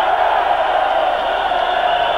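Large rock-concert crowd cheering and shouting, loud and steady.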